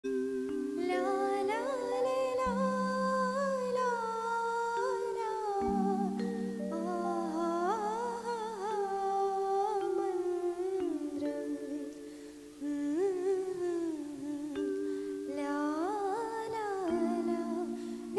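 A young woman sings a solo melody into a microphone, the voice gliding between notes, over sustained accompaniment chords that change every few seconds. The singing drops away briefly a little past the middle before the melody resumes.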